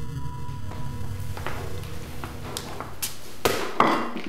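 A red rubber playground ball bouncing on a hard floor: a series of thuds, coming closer together and louder toward the end, over a low musical drone.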